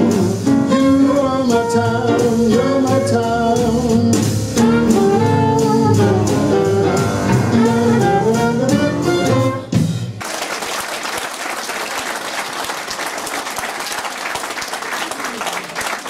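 Live band music with a saxophone playing the melody. The music stops about ten seconds in, and an audience applauds.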